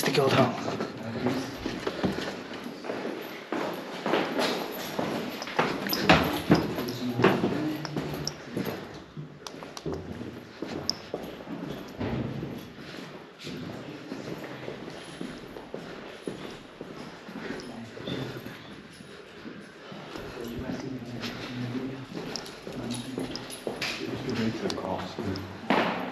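Indistinct low voices, with footsteps and small knocks.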